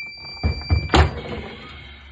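Heat press timer sounding a steady high electronic tone at the end of a 15-second press of a heat transfer. About half a second in, then again at one second, the clamp handle is released and the press platen swings open with heavy metal thunks; the tone cuts off at the second, louder thunk, followed by a short rattle.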